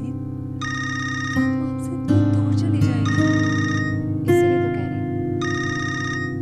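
A phone ringtone ringing in repeated short bursts over steady background music.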